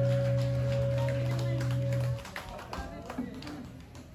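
A live band's final chord on electric guitars held steady, then cut off sharply about two seconds in, leaving faint crowd noise.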